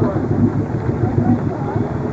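Steady low engine rumble, with faint voices talking over it.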